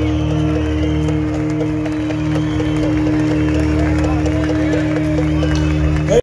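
Rock band playing live, heard from within the audience: electric guitars and bass hold a steady chord while crowd voices shout over it.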